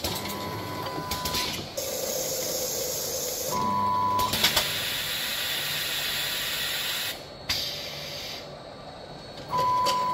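Filling monoblock running, with long bursts of pneumatic hissing as its valves vent, a steady high beep sounding three times and a few sharp clicks.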